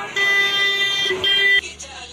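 Vehicle horn honking, one long honk and then a short one, cutting off sharply about a second and a half in.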